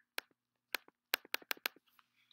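A computer mouse button clicked about six times in quick succession, each sharp click followed by a softer one, the clicks coming faster in the second half.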